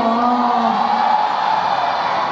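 A voice held on one long note that slides down and fades out about a second in, over a steady wash of audience noise.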